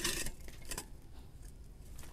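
A short rasp of metal at the start, then a few light clicks, from a small hand tool being worked at the base of a potted bonsai.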